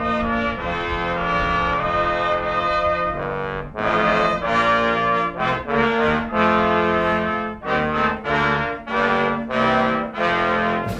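Military brass band playing a slow piece in long held chords, with a brief break a little past three seconds in.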